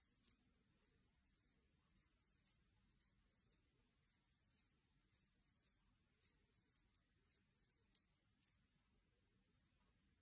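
Near silence, with faint soft clicks of wooden double-pointed knitting needles, about two a second, as knit stitches are worked.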